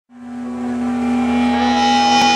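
A single sustained note from an amplified electric guitar, cutting in just after the start and swelling steadily louder as it rings.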